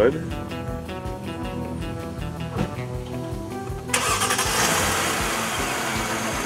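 Background music with a steady beat, then about four seconds in the 2008 Mercedes-Benz S550's 5.5-litre V8 starts up and runs smoothly, a steady, even engine sound.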